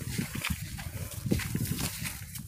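Footsteps through dry grass: a few irregular steps with rustling of the dry stems.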